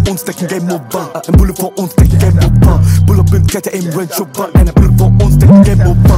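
Bass-boosted drill rap track: a rapped verse over long, heavy 808 bass notes and rapid high ticks of the beat.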